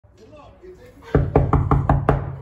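Knuckles knocking on a painted panelled door: five quick, even raps starting about a second in.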